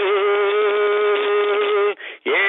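A singer holding one long sung note in a song, wavering slightly at first and then steady, cut off just before the end.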